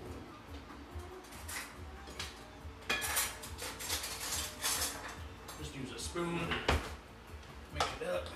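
Metal pot and utensils clattering at the stove, a run of knocks and scrapes that starts about three seconds in, with one louder knock near the end.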